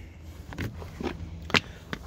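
A few light clicks and taps from a hand handling the plastic trim cover on a van's door frame, the loudest about one and a half seconds in, over a low steady rumble.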